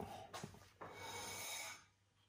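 A man breathing in through his nose, a steady, even intake about a second long near the middle.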